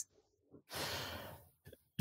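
One soft breath, a sigh-like rush of air lasting under a second about a second in, between stretches of near silence.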